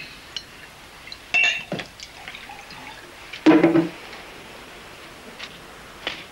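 A drink being poured into a glass, with a few short clinks and knocks of glassware.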